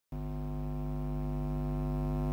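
Steady electrical mains hum through an amplified sound system: a low buzz with many evenly spaced overtones, growing slowly louder.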